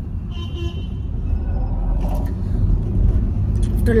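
Car cabin noise while driving: a steady low rumble of road and engine. A faint high tone sounds briefly about a third of a second in.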